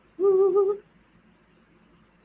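A woman's short wordless vocal sound on one high, held note, lasting about half a second near the start.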